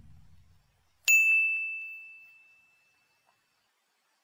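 A single bright bell ding from a subscribe-banner notification sound effect. It rings out about a second in and fades away over roughly two seconds. Before it, the low tail of a whoosh dies away.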